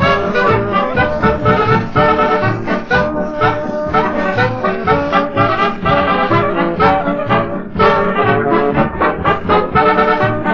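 Instrumental polka played by a brass-led dance orchestra on a 1947 78 rpm record, trumpet and trombone over a steady oom-pah beat, with no singing. There is a brief dip in the music right at the start.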